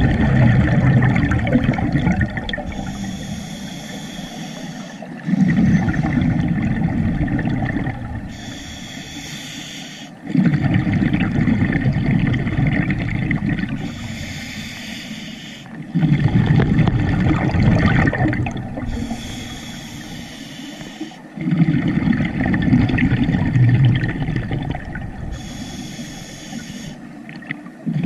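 Scuba diver breathing through a regulator underwater: a short hiss on each inhale, then about three seconds of loud rumbling exhaled bubbles, the cycle repeating roughly every five seconds, five breaths in all.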